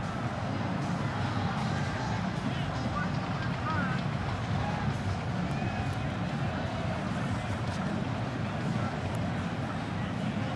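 Stadium crowd noise: many voices blending into a steady murmur, stepping up in level right at the start.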